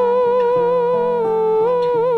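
Moog Etherwave theremin playing the melody, amplified: one long held note with a gentle vibrato that lifts briefly in pitch near the end. Acoustic guitar picks chords underneath.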